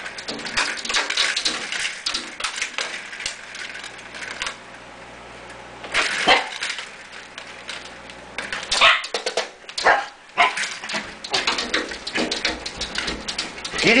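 A small dog barking and whimpering in short, excited bursts at a squirrel on the far side of a glass door, with vertical window blinds clattering as it pushes in among them.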